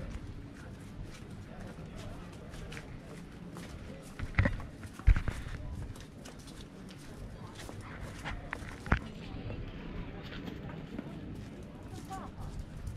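Footsteps on stone paving, a run of short irregular taps, with a few louder knocks near the middle.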